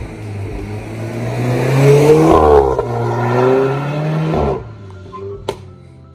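Alfa Romeo Giulietta Veloce S with its 1750 TBi turbocharged inline-four driving past at speed. The engine swells to its loudest a little over two seconds in as the car passes, then fades as it drives away.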